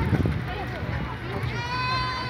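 Voices of passers-by in an open pedestrian plaza, with a sustained high-pitched call or tone that starts about one and a half seconds in and holds steady.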